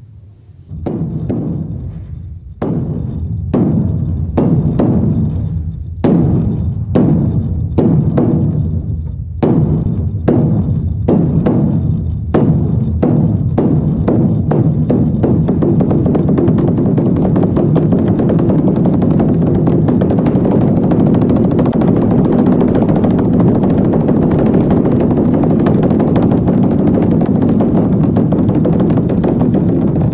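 Large temple drum struck in single blows about a second apart that speed up steadily and merge into a continuous drum roll from about halfway through.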